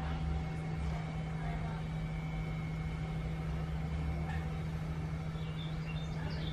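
A steady low mechanical hum with a deep rumble beneath it, unchanging in pitch and level throughout.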